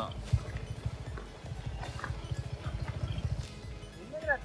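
Suzuki Gixxer SF 250's single-cylinder four-stroke engine running steadily, a rapid low pulsing.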